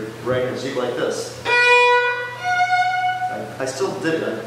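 A viola playing two long bowed notes, a lower one starting about a second and a half in and then a higher one. A voice is heard before and after the notes.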